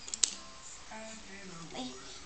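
A single sharp click as a small child twists and handles a plastic toy microphone.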